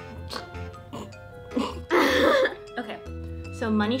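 Background music with a steady bass line. About two seconds in, a person gives one loud, short, harsh vocal burst, like a cough.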